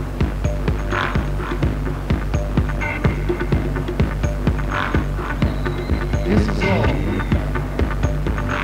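Electronic dance music from a DJ mix, with a steady beat over a sustained bass line.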